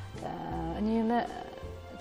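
A woman's voice drawing out one hesitant syllable about half a second in, its pitch rising and then falling, over quiet background music with steady low notes.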